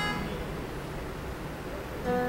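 An acoustic guitar chord rings out and fades in the first moments, leaving a pause with only the low hum of the hall's room noise.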